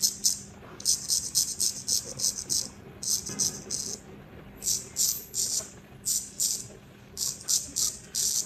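Straight razor scraping whiskers off a lathered cheek in short, quick strokes, coming in runs of several crisp scrapes a second with brief pauses between runs.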